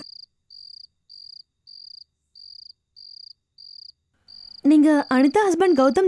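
A cricket chirping steadily, short even chirps about three every two seconds. A loud voice breaks in over it after about four and a half seconds.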